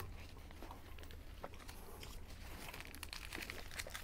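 Faint crinkling of paper ice-cream-sandwich wrappers being handled, with soft clicks and quiet chewing.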